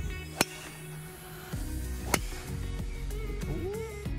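Two golf tee shots, each a single sharp crack of a driver striking the ball, about half a second in and again about two seconds in, over background music.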